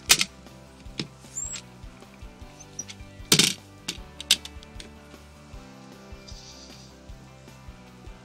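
Fiberglass anchor-locker hatch on a boat's deck being opened and shut by hand: a sharp click of its stainless latch at the start, a few lighter knocks, and the loudest clack of the hatch about three and a half seconds in, followed by a couple more clicks.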